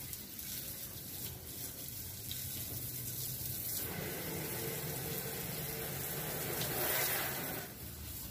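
Running water with a steady rush, fuller from about halfway in and cutting off sharply near the end.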